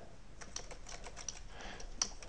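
Typing on a computer keyboard: a run of separate keystroke clicks, fairly faint.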